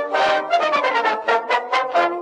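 Brass jingle, trumpets and trombones playing a quick run of short notes.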